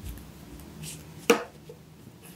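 A single sharp knock, a plastic glue stick set down upright on the wooden tabletop, about a second and a half in, with faint rustling of paper being handled before it.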